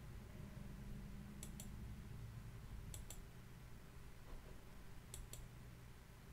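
Computer mouse button clicked three times, each a quick press-and-release pair of faint clicks, over a low steady hum.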